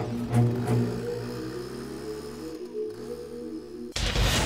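Background music: a low, pulsing score that settles into a held low drone, which dips in pitch and comes back up about three seconds in.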